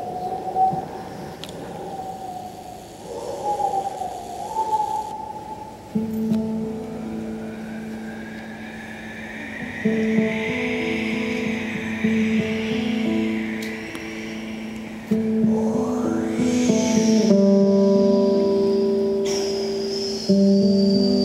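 Wavering, whistle-like mouth sounds made with pursed lips open the passage. About six seconds in, a nylon-string classical guitar comes in, picking sustained notes, while airy vocal sounds rise and fall over it, including a quick upward sweep near the end.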